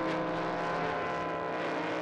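Racing powerboat engine running flat out at a steady pitch, a distant, even drone across the water.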